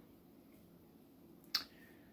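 Near silence: room tone, broken by a single short, sharp click about one and a half seconds in.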